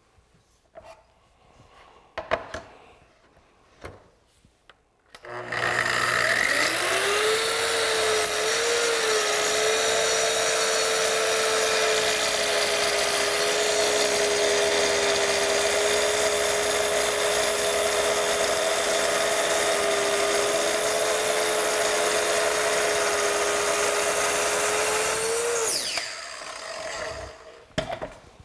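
Kreg ACS2000 plunge-cut track saw starting about five seconds in, its pitch rising to a steady whine as it rips along the guide track, trimming the edge off a wooden board. It runs for about twenty seconds, then switches off and winds down near the end. A few light handling clicks come before it starts.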